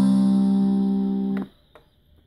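The last guitar chord of a song held and ringing, fading a little, then cutting off suddenly about one and a half seconds in, followed by a faint click.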